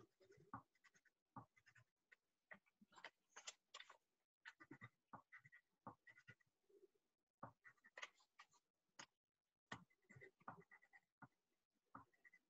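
Near silence, with faint, irregular scratchy taps of a paintbrush dabbing and scrubbing paint onto watercolour paper.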